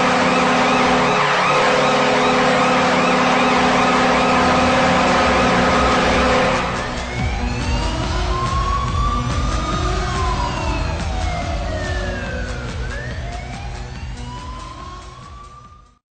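A loud siren-like sound effect that starts and stops abruptly. For about six and a half seconds it holds a sustained horn-like chord with wavering, warbling tones above it. Then come several rising and falling pitch sweeps that cross one another and fade out near the end.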